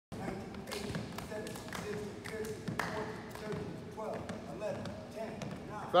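Basketballs bouncing on a wooden gym floor, sharp knocks at an uneven pace of about two a second, echoing in the hall.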